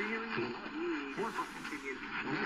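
Weak AM broadcast speech from the CC Radio EP Pro's speaker, with two medium-wave stations mixing on nearby frequencies so that a quick-talking voice overlaps another station. A soft hiss comes in during the second half.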